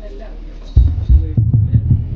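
Wind from a pedestal fan buffeting the phone's microphone: a sudden loud low rumble starts about a third of the way in and pulses unevenly, over a steady low hum.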